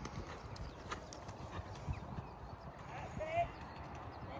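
Hoofbeats of a horse cantering on an outdoor arena surface, a run of soft, uneven thuds.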